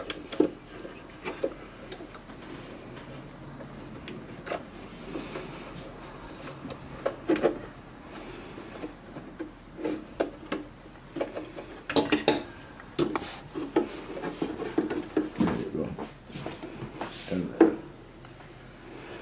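Handling noises from wiring a heat press's control board by hand: scattered small clicks, taps and rubbing as spade connectors are pushed onto the board's terminals and the board knocks against its metal housing. Sharper clusters of knocks come about seven, twelve and seventeen seconds in.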